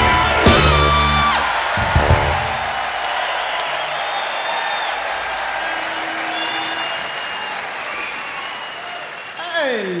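A live band ends the song on a final chord in the first couple of seconds. Then the audience applauds and cheers, with whistles.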